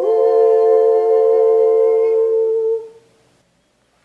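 A woman's unaccompanied voice in harmony, two notes held together as the final chord of a meditative canon chant. It dies away about three seconds in, leaving silence.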